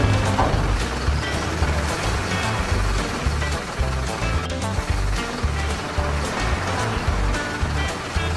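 Background music with a steady, pulsing bass beat.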